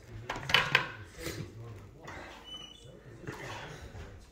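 Two sharp clicks of hard things knocking together at a meal table about half a second in, followed by softer scattered clinks and rustles over a low steady room hum.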